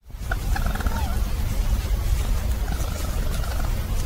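A few faint, wavering, whining animal calls over a loud, steady low rumble of recording noise in a night forest recording. The calls are put forward as a sasquatch vocalization, which the uploader suggests is a porcupine.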